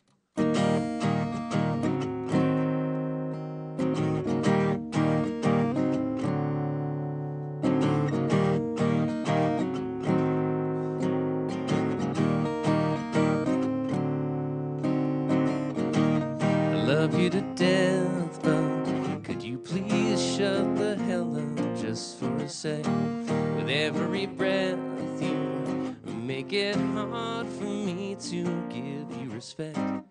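An acoustic guitar strummed, playing the opening of a song; it comes in sharply about half a second in, after a moment of near silence.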